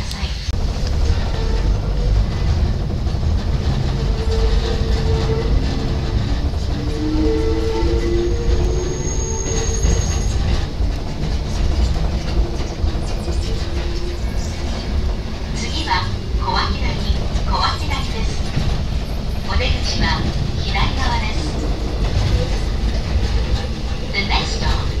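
Hakone Tozan Railway electric train running, heard from the driver's cab: a steady low rumble of the wheels on the track, with a faint motor whine that rises a little in pitch partway through.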